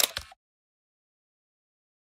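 Digital silence: the sound cuts out completely about a third of a second in, after a brief burst of noise at the very start.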